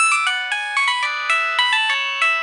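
Samsung mobile phone ringing with a melodic ringtone: a quick tune of bright electronic notes that starts suddenly out of silence.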